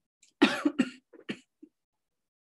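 A woman coughing: a short fit of several coughs close together, the first ones loudest, trailing off into a few smaller ones.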